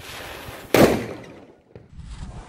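Volcano Tracer bomb, a green thread-wrapped ball firecracker, going off with a single very loud bang about three-quarters of a second in, after a short hiss from its burning fuse. The bang dies away within about half a second.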